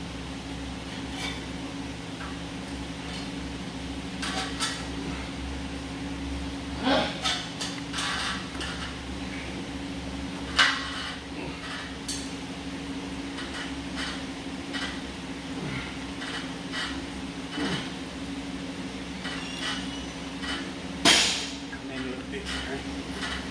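Scattered metallic clinks and knocks from gym equipment under a steady fan hum, as a dumbbell-weighted set of hanging knee raises is done on ab straps. One sharp clank comes about halfway through and a louder one near the end.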